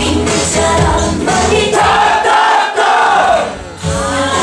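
K-pop dance track with singing played loud over the sound system; about halfway through the beat drops out, leaving held voices that fade out shortly before the end.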